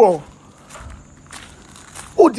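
A man's voice trailing off on a falling pitch, then a quieter pause with a few faint soft knocks.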